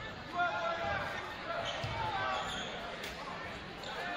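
A basketball being bounced on a hardwood gym floor, with voices echoing around the hall.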